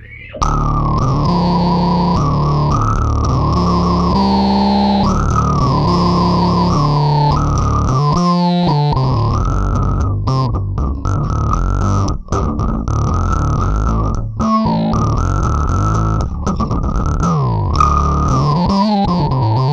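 Electric bass played fingerstyle in a funky line through an Ashdown SZ Funk Face tube overdrive and auto-wah pedal, giving a loud, distorted bass tone.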